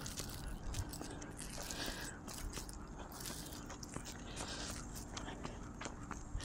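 Footsteps and light scuffing on an asphalt path during a slow dog walk, heard as many small irregular clicks and crunches over a low hiss.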